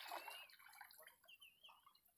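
Near silence, with faint drips and trickles of shallow sea water around wading legs and hands.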